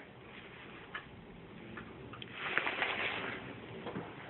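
Quiet room tone with a few faint, light clicks and a brief rustle of handling noise in the second half.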